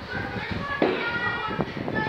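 Children's voices in the background, talking and playing, several high-pitched voices at once.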